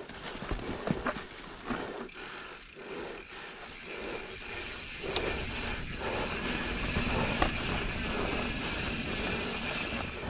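Mountain bike rolling down dirt singletrack over dry fallen leaves: a rough, continuous tyre and trail noise with a few sharp knocks and rattles from the bike over bumps. It grows louder and steadier from about four seconds in as the bike picks up speed.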